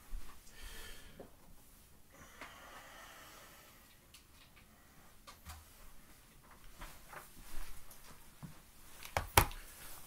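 Quiet room with faint, scattered handling noises and small clicks from someone moving about out of view, then a sharp tap or knock about nine seconds in as he comes back close to the microphone.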